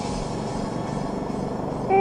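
Go-kart running on track, heard from onboard as a steady noise, with faint sustained background music under it. A voice comes in at the very end.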